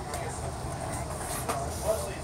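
Outdoor background: a steady low rumble with faint voices, and two short clicks near the end.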